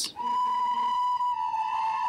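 A group of children playing plastic recorders together, holding one long high note that starts a moment in and sags slightly in pitch about halfway through.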